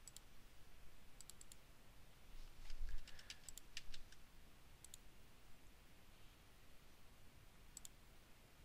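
Faint computer mouse clicks in small groups: a quick run of four about a second in, a scatter around three seconds, a pair near five seconds and another pair near the end.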